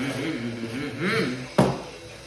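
A boy hums mouth engine noises in repeated rising-and-falling arcs while driving a toy monster truck. About one and a half seconds in comes one sharp knock as the toy truck strikes the table.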